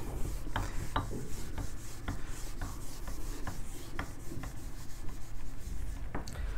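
A handheld eraser wiping marker writing off a whiteboard in repeated rubbing strokes, about two a second.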